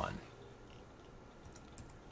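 A few faint computer keyboard key clicks near the end, with quiet room tone otherwise.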